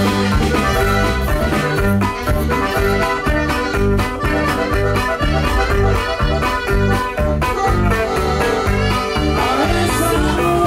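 Live norteño band music led by accordion and saxophone, over drums and a steady pulsing bass beat.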